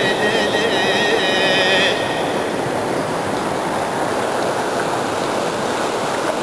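A folk song's high melody line, wavering in pitch, over a steady rushing noise; the melody stops about two seconds in and the rushing noise goes on alone at a slightly lower level.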